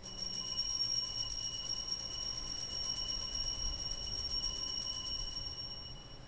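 Altar bells shaken in a continuous jingling ring, sounded at the elevation of the chalice; the ringing fades away near the end.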